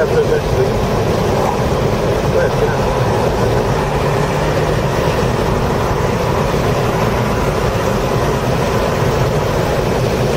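Audi A5 engine pulling steadily at about 3,100–3,700 rpm under throttle, heard inside the cabin with road and wind noise at 65–75 mph.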